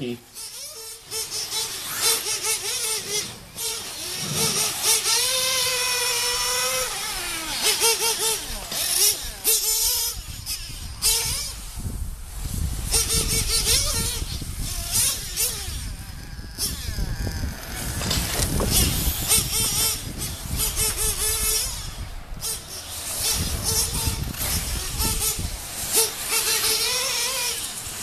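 Nitro engine of a radio-controlled truggy running at high revs, its pitch rising and falling again and again as the truck accelerates and slows around the track.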